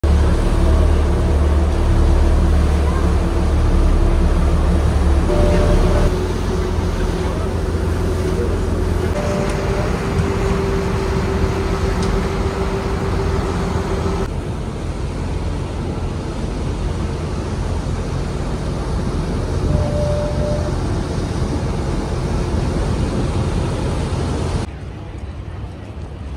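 Engine rumble and wind noise from a ride on the harbour, in several clips cut together. It starts with a heavy low rumble and a steady hum, turns to a hissier, more even wash of wind and water, and drops sharply in level near the end.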